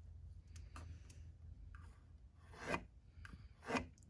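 A pencil scratching on wood as an angle line is marked on a leg along a straightedge, in two short strokes late on, over a faint low hum.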